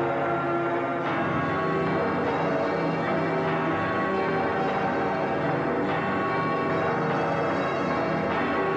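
Bells ringing continuously: several pitches struck again and again, each left to ring on under the next.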